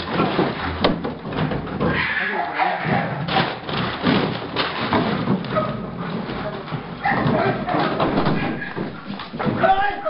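Scuffle of a German Shepherd protection dog on the bite against a decoy in a padded bite suit, with sacks and boxes being knocked about and men's voices shouting over it.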